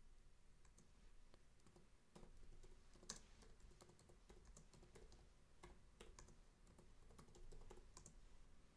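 Faint computer keyboard typing: irregular key clicks as a line of text is typed, one click standing out about three seconds in.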